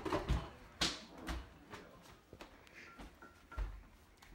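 Quiet scattered knocks, clicks and a few low thumps of people moving about and handling things at a kitchen counter.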